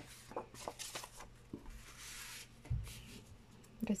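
Sheets of paper and card being handled and slid over one another on a tabletop: light rustles and taps, a longer scraping rustle about two seconds in, then a soft thump.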